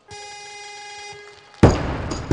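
Electronic down-signal buzzer sounds steadily for about a second, the signal that the lift is good. About a second and a half in, the loaded 175 kg barbell with rubber bumper plates is dropped from overhead and crashes loudly onto the lifting platform.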